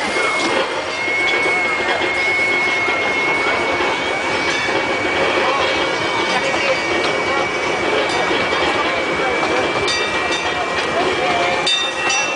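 Severn Lamb park ride train running as it pulls away, with a steady high whine that rises slightly in pitch at first and then holds, under the chatter of passengers' voices.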